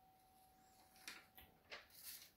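Near silence: room tone with a faint steady tone and a few faint short ticks in the second half.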